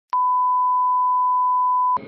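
Steady 1 kHz reference test tone of a bars-and-tone leader, one pure continuous beep. It starts with a click just after the start and cuts off with a click just before the end.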